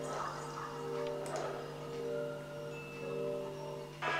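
Soft music of sustained, bell-like tones that swell and fade about once a second.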